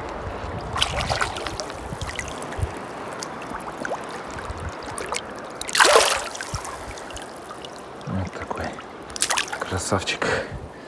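Shallow water sloshing and trickling on a boat floor around a landed bluefin tuna, with a short, louder splash by the tail about six seconds in.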